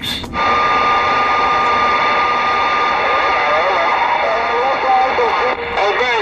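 CB radio receiver hissing with static after the transmission ends, opening with a short crackle, with a steady whistle for the first few seconds and faint, garbled voices in the noise.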